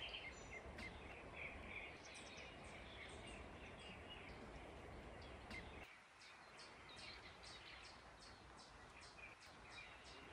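Quiet outdoor ambience with faint birds chirping repeatedly in short high calls. The low background rumble drops away about six seconds in.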